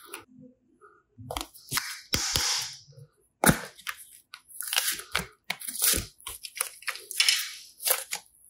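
Close-up handling of soft modeling clay and a plastic seashell mold: irregular squishing, crackling and clicking, with one sharp click about three and a half seconds in.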